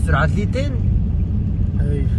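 Steady low rumble of a vehicle travelling on a snow-covered road, with a person's voice briefly over it in the first half-second or so.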